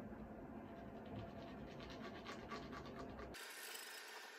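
Faint scratching and light taps of leather pieces being handled and set down on a cutting mat. Near the end the sound switches abruptly to a thin hiss.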